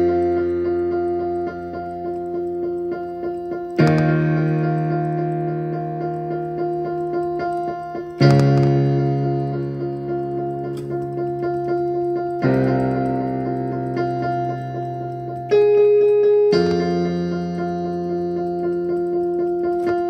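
Slow keyboard music: sustained chords, a new one struck about every four seconds and left to ring and fade, with a short extra note shortly before the last chord.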